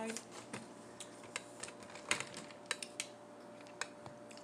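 Someone chewing crisp crackers close to the microphone: irregular sharp crunches and mouth clicks, a dozen or so, scattered at uneven intervals.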